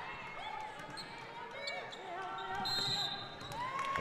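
Basketball court sound during play: a ball being dribbled and faint voices from players and crowd. About three quarters of the way through, a referee's whistle blows briefly, calling a travel.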